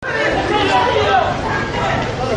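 A dense crowd chattering, many voices talking over one another in a continuous babble.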